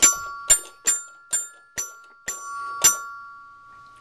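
A small bell-like chime struck seven times, about every half second, each strike leaving a bright ringing tone that carries on underneath the next ones.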